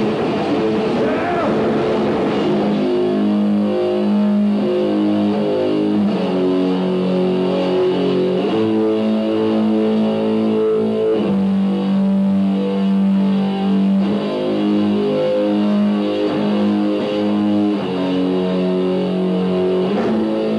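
Rock band playing live: a slow passage of electric guitar and bass chords, each held for a couple of seconds before changing, after a rougher, noisier first few seconds.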